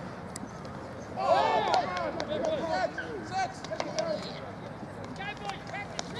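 Men's voices shouting and calling across an outdoor rugby league field, loudest in a run of shouts from about one to two seconds in, with fainter calls later.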